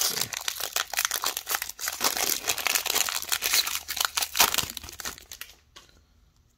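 Foil trading-card pack wrapper crinkling and tearing as it is opened by hand and the cards are pulled out, in a quick run of crackles that stops about five and a half seconds in.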